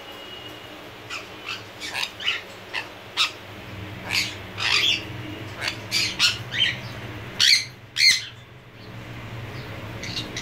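Jenday conure giving a string of short, sharp squawks and chirps, irregularly spaced, with the two loudest coming close together near the end.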